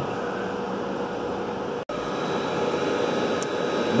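Steady whirring of the cooling fans of a Christie digital cinema projector and its rack equipment, with a faint steady hum. The sound cuts out for an instant a little before halfway through.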